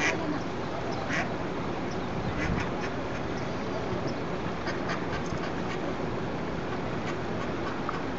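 Female mallard hen quacking in short, irregular calls, the loudest at the very start and around two and a half seconds in: a mother duck calling to her ducklings.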